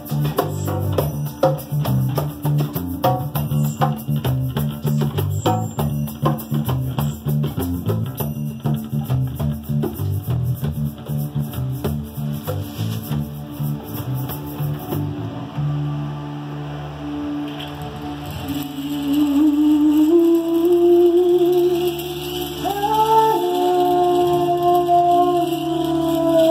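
Band rehearsal music: acoustic bass guitar with hand drums playing a busy rhythmic groove. About fifteen seconds in the drums stop, leaving a held bass note under long, wavering held melody notes and a soft shaker.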